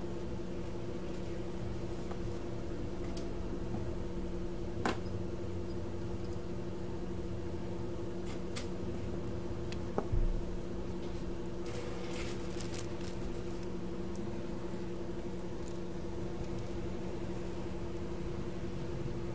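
Steady hum of electronics-bench equipment, a fan-like drone with low held tones. A few small sharp clicks come about five and ten seconds in, and a short run of faint ticks about twelve seconds in, as tiny surface-mount parts are handled on the circuit board.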